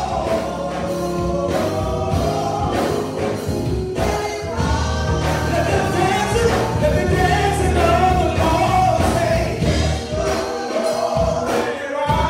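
Gospel song sung by a small praise team of three voices, female and male, over instrumental accompaniment with a steady bass line and percussion.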